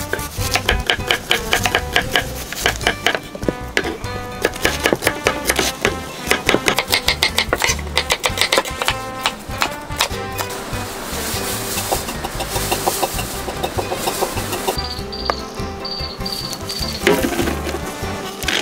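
Background music, with knives chopping quickly on wooden cutting boards in rapid repeated knocks through the first half. The music carries on after the chopping thins out.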